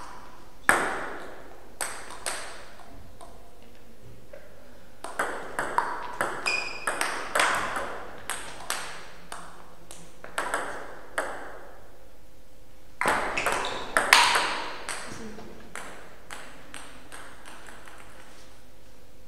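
Table tennis ball being struck by rackets and bouncing on the table: sharp, hollow clicks in two quick rallies about five and thirteen seconds in, with single bounces between points.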